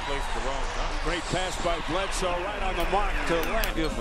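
Basketball game sound at low level: arena crowd noise with scattered voices, and a basketball bouncing on the hardwood court.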